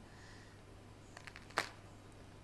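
Crust of a freshly baked ciabatta roll crackling as a hand presses it: a few faint crackles, then one sharper crack about a second and a half in. The crackle is the sign of a crisp, crunchy crust.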